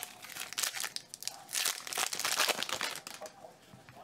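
Trading cards, their plastic holders and foil pack wrappers being handled: a run of quick crinkling and rustling, thickest in the middle and thinning out near the end.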